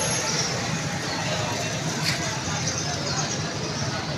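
Busy street ambience: a steady motorcycle and traffic drone mixed with people talking.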